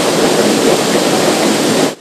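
Loud, steady rush of churning wastewater at a sewage treatment plant. It cuts off abruptly near the end.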